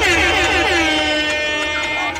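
Air horn sound effect blasted over the PA system right after a rap verse ends, its pitch sliding down and then holding steady.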